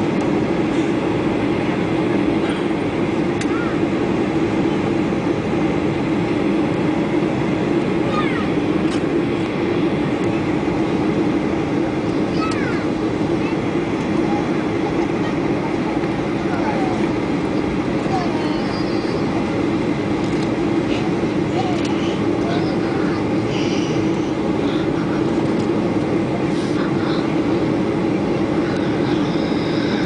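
Steady drone of a jet airliner's cabin on descent: engine and airflow noise heard from a seat over the wing.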